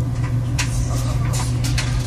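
A Boston terrier scratching its rump against a metal wall-vent grille: a few short scraping rattles over a steady low hum.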